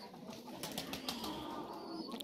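Pigeons faintly heard: a brief flutter of wings and soft cooing.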